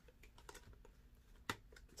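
Near silence with a few faint clicks and taps from hands handling something on a table, one sharper click about one and a half seconds in.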